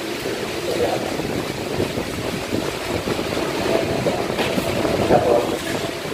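Indistinct voices talking over a steady rushing background noise, with no clear words.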